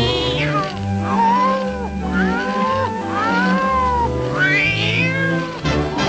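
A cartoon cat's voice giving a run of long, wailing meows, each rising and falling in pitch, over orchestral cartoon music with low, held bass notes.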